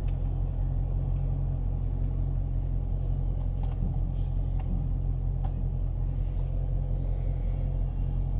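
2015 Dodge Challenger Scat Pack's 6.4-litre HEMI V8 idling steadily in park, heard from inside the cabin as a low, even rumble. A few faint clicks come in the middle.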